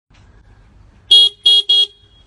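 A motor scooter's horn beeping three times in quick succession, short steady-pitched toots starting about a second in.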